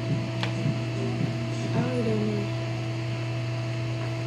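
Steady low hum of a small electric fan running, with a few fixed tones over it. A faint, brief murmur of voice comes in about halfway through.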